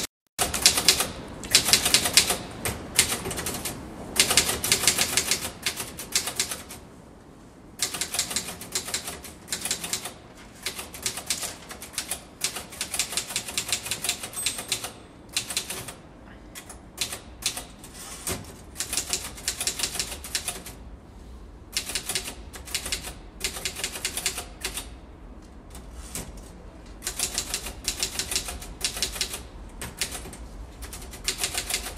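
Typing on keys: rapid runs of clicks in bursts broken by short pauses, over a faint low steady hum.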